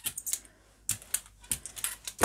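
Hand brayer rolling acrylic paint over a gel printing plate, giving a scattering of light, irregular ticks and clicks, about half a dozen in two seconds.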